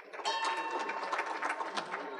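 A bell struck in quick repeated strokes, with a steady ringing tone under the strikes that fades after about a second and a half, marking the meeting's adjournment.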